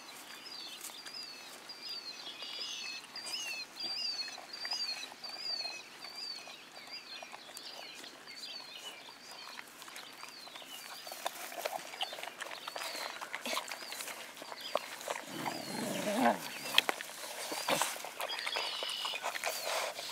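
Wolf pups licking and lapping frozen yogurt from a paper cup, a patter of small wet clicks, with a brief low grunt from a pup about three-quarters of the way through. A bird repeats a short high chirp about twice a second in the background through the first two-thirds.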